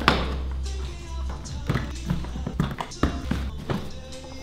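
Clicks and knocks of a hard plastic drone case being unlatched and its lid opened, a sharp click at the start and several more later, over background music with a steady low bass.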